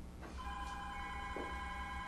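A steady electronic ringing tone, several pitches sounding together, starting about half a second in.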